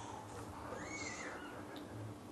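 Quiet room tone with one faint, brief high squeak that rises and falls in pitch about a second in.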